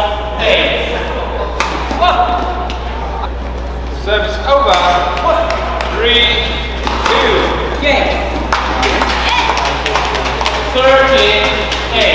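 Badminton play: repeated sharp racket strikes on the shuttlecock and shoes squeaking on the court, with voices calling out in between.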